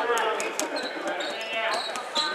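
Handball bouncing on a wooden sports-hall floor, several sharp thuds, with brief high shoe squeaks and players calling out.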